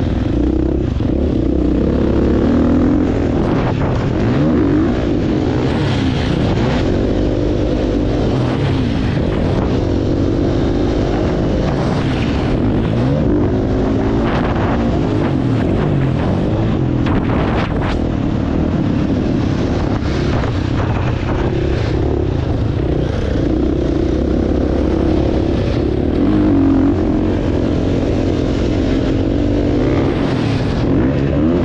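Dirt bike engine heard from on the bike as it is ridden around a motocross track, the revs rising and falling over and over through the corners and straights.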